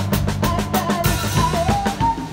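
Acoustic drum kit played with sticks along to a backing song: quick drum strokes over a melody line and bass, with a cymbal wash about a second in.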